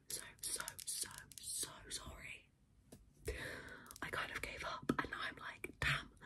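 A woman whispering close to the microphone, ASMR-style, with a few sharp clicks among the words and a pause of about a second in the middle.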